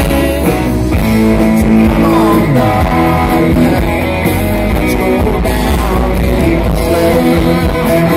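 A live band playing a song, with electric guitar to the fore over bass and drums, recorded from within the audience.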